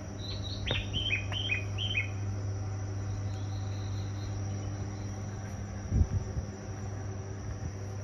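A quick run of short, falling bird-like chirps in the first two seconds, over a steady high whine and a low steady hum. There is a single dull thump about six seconds in.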